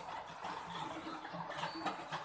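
Black cat eating from a bowl: irregular wet chewing and lapping clicks, with a sharper click near the end.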